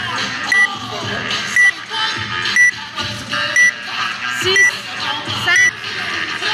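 Countdown timer beeping, a short high beep once a second, six times, over background music with a steady beat.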